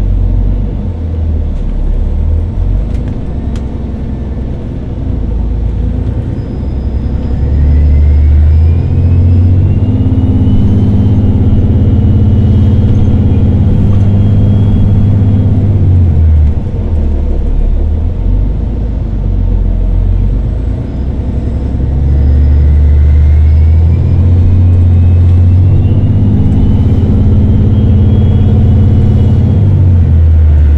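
Interior of a 2013 New Flyer XDE40 diesel-electric hybrid bus (Cummins ISB6.7 engine, BAE Systems HybriDrive) pulling away twice: each time the low rumble swells and the hybrid electric drive gives a rising whine as the bus gathers speed, first about seven seconds in and again about twenty seconds in.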